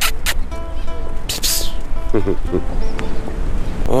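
Background music with sustained, held notes, and a brief voice a little after two seconds in.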